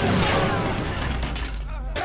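Action TV soundtrack: crash and blast-like sound effects over music, with a voice in the mix.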